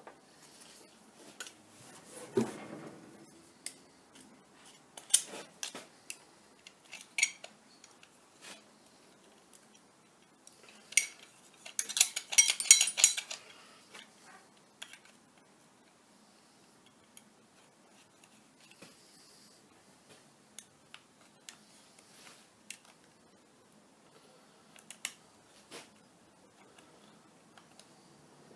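Scattered light metallic clicks and clinks of small parts and hand tools handled on a workbench as a small ID plate and its screws are fitted to a lathe apron, with a dense flurry of rapid clicks about eleven to fourteen seconds in.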